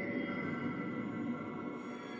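Electronic music from a laptop ensemble: many sustained, steady tones layered together over a grainy, shimmering low texture, with no beat.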